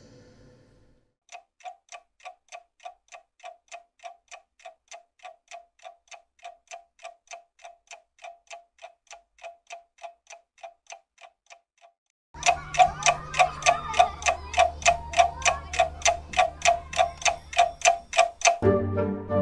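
Clock ticking steadily, about four ticks a second, starting about a second in. Around twelve seconds in the ticking gets louder and a low droning music bed with sliding tones comes in under it.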